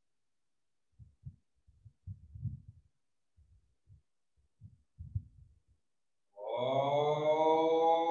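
A few seconds of faint, irregular low knocks and rustles, then a loud held tone with many overtones starts about six and a half seconds in, settling quickly and ringing on steadily.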